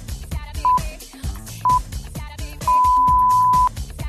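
Workout interval timer beeping at one steady pitch over dance music: two short beeps about a second apart, then one long beep of about a second. It is a countdown into the next 20-second work interval.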